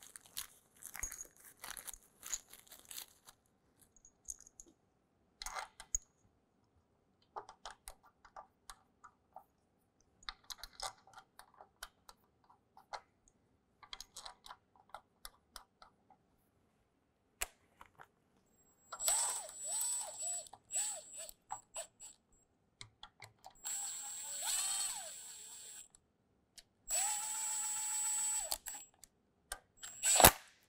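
Scattered light clicks of metal parts being handled, then a power tool running in three short bursts, its motor pitch rising and falling, as it snugs the three mounting bolts of a new oil pump on a GM 3.6L V6.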